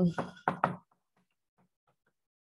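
A woman's drawn-out hesitant "um" in the first second, then faint short taps of chalk on a blackboard as an equation is written.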